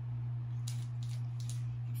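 Steady low hum with a few soft, brief rustles and taps, about a second in, as Pokémon card booster packs and packaging are handled.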